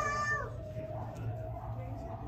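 A young child's high, drawn-out whining call, ending about half a second in, followed by a low murmur of voices over a steady low hum.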